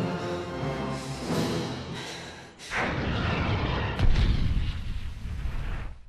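Dramatic orchestral score, cut off about two and a half seconds in by a sudden rushing blast with a deep rumble, loudest about four seconds in. It is the cartoon sound effect of the red signal flare being fired, the signal for 'unable to return'.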